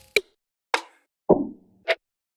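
Four short percussion one-shot samples from a trap/R&B drum kit's miscellaneous folder, played one at a time with a gap of silence between each. The third rings a little longer, with a lower tail.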